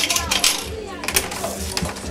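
Coins dropping and clinking onto a hard counter top: a few short metallic clicks.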